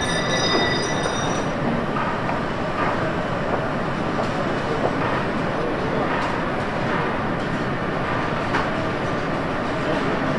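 Steady din of a factory workshop floor: a dense mix of machinery and work noise with scattered faint clicks and knocks. A high-pitched whine at the start stops about a second and a half in.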